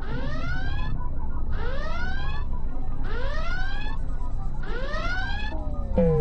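Ambient electronic music: a pitched synthesizer tone with many overtones sweeps upward four times, about once every second and a half, over a steady low bass drone.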